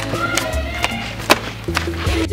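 Background film music with sustained bass notes and sharp percussive hits about twice a second.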